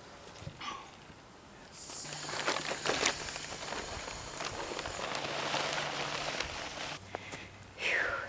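Dirt being packed and scraped around the base of a wooden fence post: a gritty crunching that starts about two seconds in, with a few sharp knocks near three seconds, and stops shortly before the end.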